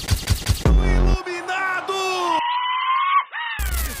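Edited-in comedy sound effects: a rapid machine-gun-like rattle of about seven hits a second that stops within the first second, a short deep boom, then a long held high tone that bends and falls away, ending in a brief burst of noise.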